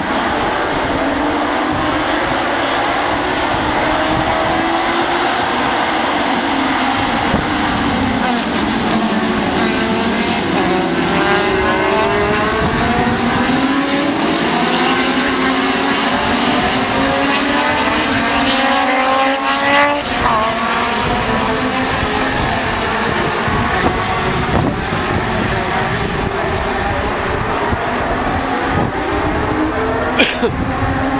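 A pack of historic Formula 2 single-seater race cars accelerating, many engines running at once. Their pitches overlap, each rising and dropping back as the cars rev and change up through the gears.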